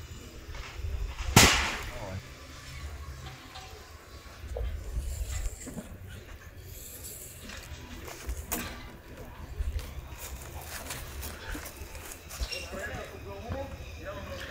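Low wind rumble on the microphone with faint distant voices, broken by a sharp click about a second and a half in and a smaller one past the middle.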